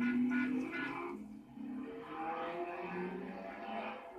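A cartoon soundtrack playing through a television speaker and picked up from the room: a run of held, pitched notes that change every half second or so.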